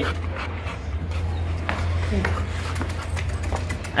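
A young pit bull panting close to the microphone, over a steady low rumble.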